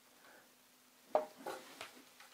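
A few faint clicks and knocks from hands working the telescope's equatorial mount and its locking screws: a short sharp one about a second in, then two smaller ones.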